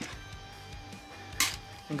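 Quiet background music with a sharp metallic click about one and a half seconds in, from an AR-10's buffer being worked out of its buffer tube.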